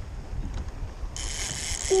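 Wind buffeting the microphone over choppy water from a kayak, a steady low rumble, with a brief high hiss beginning a little over a second in.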